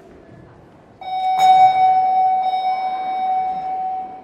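Opening note of a rhythmic gymnastics ball routine's accompaniment music over the hall speakers: a single bell-like tone starting about a second in, with a sharp strike just after, held and slowly fading.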